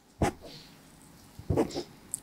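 A man coughing into his hand: one short cough, then two more close together near the end.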